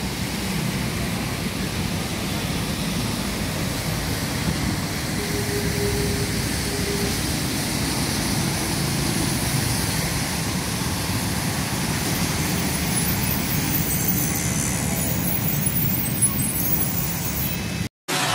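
City traffic on a rain-wet road: a steady wash of engines and tyre hiss. It cuts off suddenly near the end.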